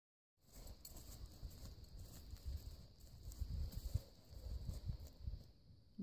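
Faint, muffled hoofbeats of a ridden horse walking on grassy turf, an irregular run of soft low thuds.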